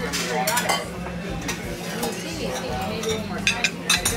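Restaurant dining-room sound: faint voices of other diners over a steady low hum, with a few sharp clinks of cutlery on a plate near the end.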